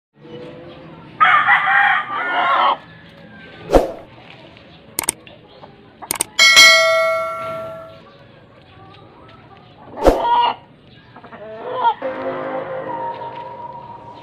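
A rooster crows loudly about a second in, with clucking in the yard around it. A sharp ringing strike about six and a half seconds in dies away over a second or so, and two knocks come near four and ten seconds.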